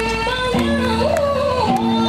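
Nepali folk dance song: a singer's voice sliding between ornamented notes over held bass chords, with light percussion ticking.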